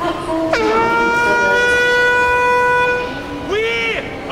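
A single strong voice singing one long high note: it scoops down into the note about half a second in and holds it steady for about two and a half seconds. Near the end a shorter note rises and falls.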